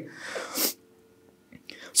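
A man's sharp breath in through the mouth, a noisy rush lasting well under a second that swells just before it stops.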